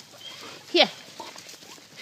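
A woman's voice says "Here" once, with a falling pitch, a little under a second in; otherwise only faint rustling.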